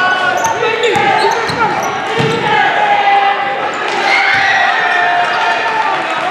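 Live basketball game sound in a gym: a ball being dribbled on the hardwood floor, with short high sneaker squeaks and indistinct voices of players and spectators.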